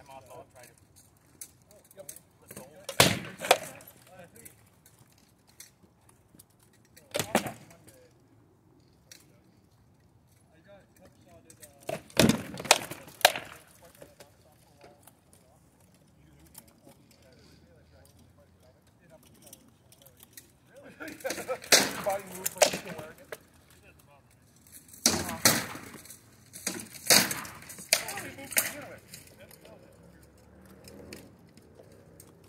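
Rattan swords hitting shields and armour in SCA heavy-weapons sparring: sharp cracks and clacks in short flurries of a few blows each, with pauses of several seconds between the exchanges.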